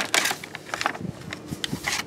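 Handling noise from scattering rodent bait blocks: a quick run of short clicks and rustles, several a second, loudest right at the start.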